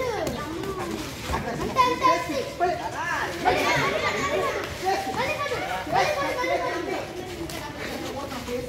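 Several children's voices talking and calling out at once, overlapping throughout.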